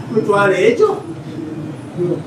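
A man's voice speaking a short phrase in the first second, then a pause.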